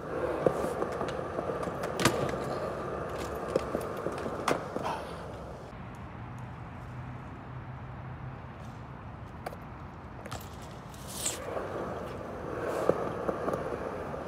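BMX bike tyres rolling over skatepark concrete, with several sharp clicks and knocks from the bike. The rolling fades for a few seconds in the middle and comes back louder near the end.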